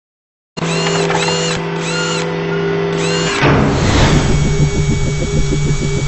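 Produced logo-intro sound: steady electronic tones under four quick sweeping effects, then from about three and a half seconds a rapid, rhythmic mechanical buzzing. It starts after about half a second of silence.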